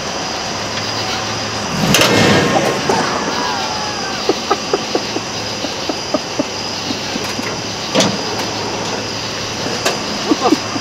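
Pickup truck engine idling with a steady low hum. About two seconds in comes a louder burst of noise lasting about a second, with a faint sliding whine, and about eight seconds in a single sharp clunk, from a drivetrain that the driver suspects has a broken rear end.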